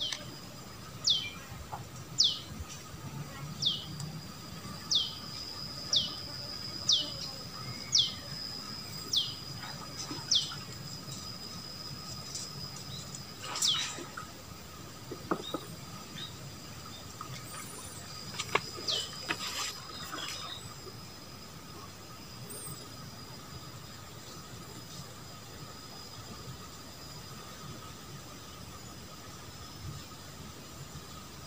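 A bird calling a short, sharply falling note about once a second, about ten times, then once more near twenty seconds, over a steady high-pitched insect drone.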